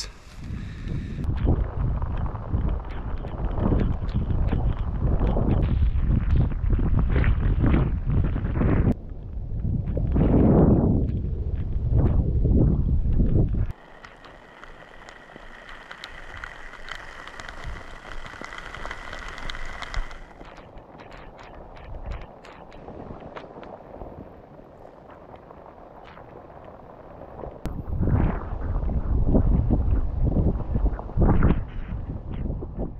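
Wind buffeting the microphone in heavy gusts on an exposed, foggy mountainside. The rumble drops suddenly about 14 seconds in to a much quieter wind hiss with a faint steady high tone for several seconds, and the heavy buffeting returns near the end.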